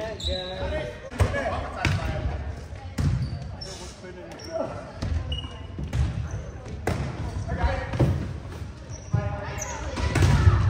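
A volleyball being struck and bouncing on a hardwood gym floor, several sharp smacks a second or two apart, with players' voices echoing in the hall.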